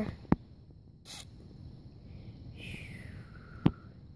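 Quiet handling sounds as a toy figure and small sticks are moved about on grass for a pretend campfire: two sharp clicks, one just after the start and one near the end, and a brief rustle about a second in. A faint falling tone runs through the second half.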